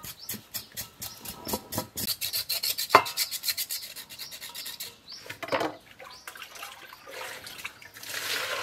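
Knife blade scraping the skin of a raw pig leg in a stainless steel bowl: a run of quick, repeated rasping strokes.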